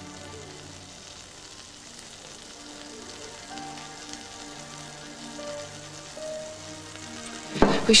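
Soft background music of slow, held low notes over a steady hiss. A sudden clatter comes near the end.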